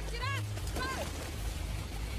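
A woman's high-pitched screams: three short cries, each rising and falling in pitch, in the first second. They sound over a steady low rumble and noise.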